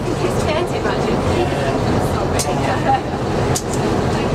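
Small diesel shunting locomotive's engine running steadily as it travels along the line, heard from inside the cab, with a few short knocks.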